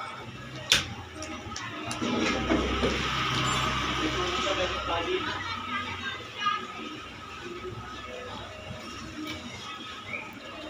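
Background voices and music heard faintly, with a sharp click under a second in and a low rumbling noise that rises about two seconds in and fades by about six seconds.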